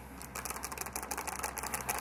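A rapid, irregular run of dry clicks and crackles, starting about a third of a second in, over a faint steady low hum.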